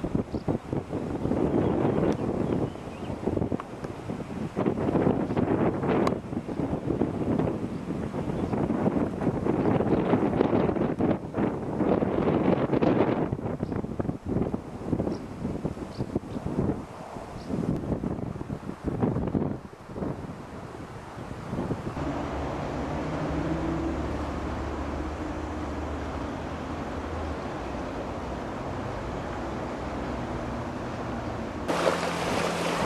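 Wind buffeting the camcorder's microphone in uneven gusts. About two-thirds of the way through, the gusts give way to a steadier, quieter hum with a faint low drone.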